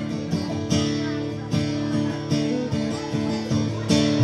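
Acoustic guitar strumming chords, a strum stroke every half second or so, with the chords ringing on between strokes.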